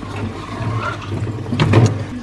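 Cardboard box being slid out of a plastic fridge shelf, scraping and rustling, with a sharper knock near the end, over a steady low hum.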